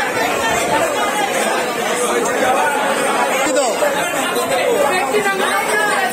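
Many people talking at once: continuous overlapping chatter of voices, with no single speaker standing out.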